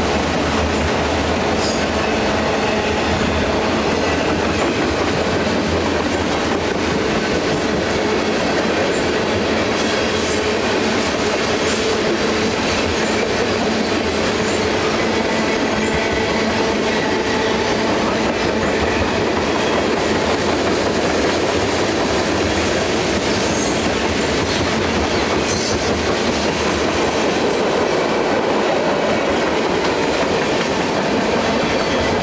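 Freight train of tank cars and autorack cars rolling steadily past: continuous rumble and rattle of steel wheels on the rails, with a few sharp clicks along the way.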